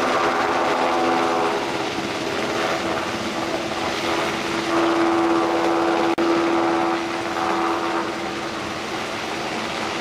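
Helicopter engine and rotor running, a steady droning hum with a strong low tone and a noisy rush, briefly cutting out about six seconds in.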